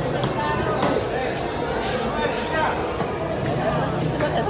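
Background chatter of people talking in a busy market, with several sharp knocks in the first half.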